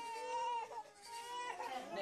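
A baby crying in drawn-out wails: one long cry in the first second, then shorter cries from about a second and a half in.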